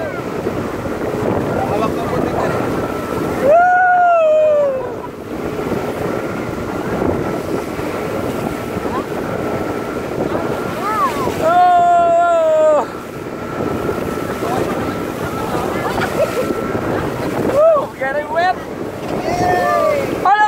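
Wind buffeting the phone's microphone and water rushing past a banana boat being towed at speed, a steady loud noise. Riders let out two long whooping calls, about three and a half seconds in and again about twelve seconds in, with shorter shouts near the end.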